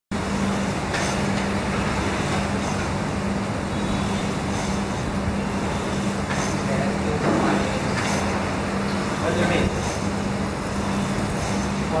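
Air rowing machine's fan flywheel whirring steadily while someone rows, with a steady low hum underneath.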